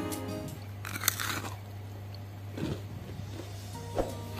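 A crisp crunch as a fried sesame-coated keciput ball is bitten about a second in, then a second, softer crunch of chewing; the snack is very crunchy. Soft background music plays underneath.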